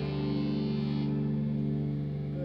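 Amplified electric guitar chord ringing out steadily through distortion and effects, struck just before and left to sustain.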